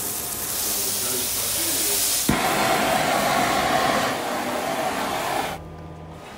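Beef burger patties frying in a hot pan, a loud steady sizzling hiss. The sound changes abruptly a little past two seconds in and cuts off sharply shortly before the end.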